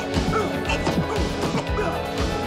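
Movie fight soundtrack: a music score running under a quick series of punch impact sound effects as two fighters trade blows.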